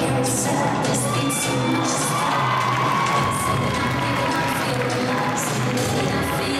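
A crowd cheering and shouting in a rink over ice-dance program music. The music comes through more clearly as the cheering eases near the end.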